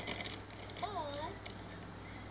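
A quick run of small crackling clicks, then a child's short hummed "mm" with a wavering pitch.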